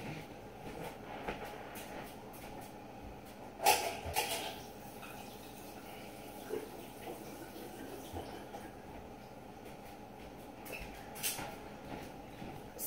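Faint, steady kitchen background noise with a few scattered knocks and clicks, the loudest about four seconds in and another shortly before the end.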